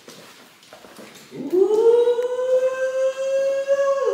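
A person's voice slides up about a second in and holds one long high note, like a drawn-out sung "ooh", after a few faint clicks.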